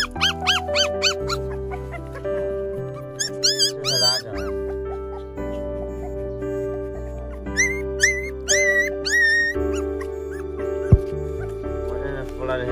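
Very young puppies, too young to have teeth, whining in short high cries that rise and fall. The cries come in three bouts: at the start, about three to four seconds in, and from about seven and a half seconds in. A single sharp thump comes near the end, over steady background music.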